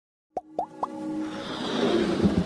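Logo-intro jingle: three quick upward-gliding bloops, each a little higher than the one before, then a swell of music building up.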